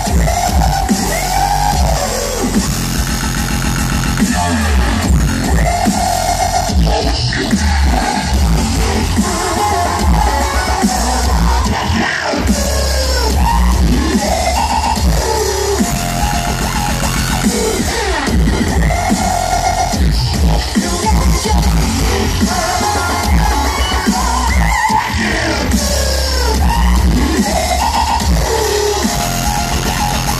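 Loud live dubstep set played over a concert sound system, with heavy bass pulses and sliding synth lines.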